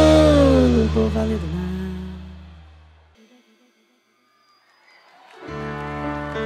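A live band's final held chord and note at the end of a song, fading out over about three seconds to near silence. The next song's opening chords fade back in near the end.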